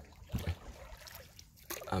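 Quiet paddling in a small plastic canoe: soft splashes of a paddle dipping into lake water, with water trickling off it, a couple of light strokes in the first half. A man's voice starts right at the end.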